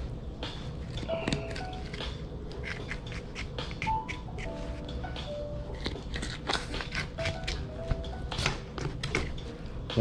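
Knife crunching and clicking through a redfish's rib bones as it is cut along the spine, a string of short crisp cracks. Soft jazz plays underneath, with a few sparse held notes.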